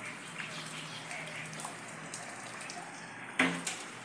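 Water pattering and trickling steadily, with scattered small drips, and one sudden loud knock near the end.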